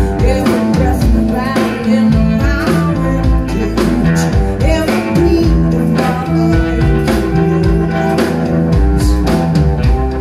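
Live blues band playing a song, with guitar and drum kit over a steady beat.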